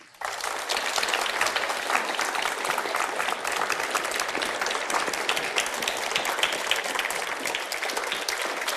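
Studio audience applauding: many hands clapping in a dense, steady patter that starts suddenly and keeps going.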